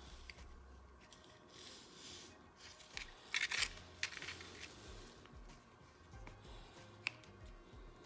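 Quiet hand-soldering work on a copper-foil trace repair: soft scratchy handling sounds, a short crisp scratchy burst about three and a half seconds in, and a single sharp tick near the end.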